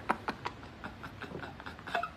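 A man laughing silently and breathlessly: a couple of sharp catches of breath at the start, then faint, broken, wheezy gasps.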